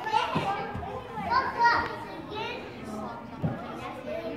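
Young children playing and calling out, their high voices coming and going, with a few soft thumps from tumbling on a padded play floor.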